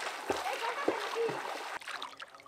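Water splashing and sloshing in a pond as a person swims through it, in a rapid run of uneven splashes.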